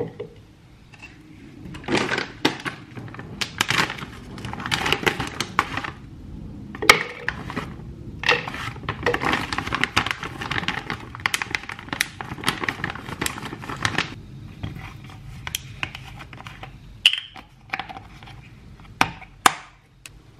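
A plastic bag of frozen mixed berries being handled and pulled open, crinkling in two long stretches. Sharp clicks and knocks come near the end as frozen berries drop into a clear plastic blender cup.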